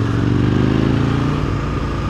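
Sport motorcycle engine running at road speed, its note easing down slightly as the bike slows in traffic, with wind and road noise on the helmet-mounted camera.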